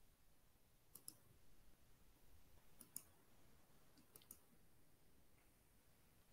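Near silence broken by faint computer mouse clicks, three pairs of them a second or two apart, as someone clicks around on screen.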